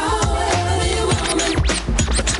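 Hip hop DJ mix with record scratching over a steady bass beat.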